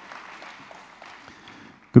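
Audience applause, an even patter of clapping that thins out and dies away toward the end.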